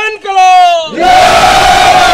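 A group of men shouting a slogan together. One long call falls away in the first second, then many voices join in a loud drawn-out shout about a second in.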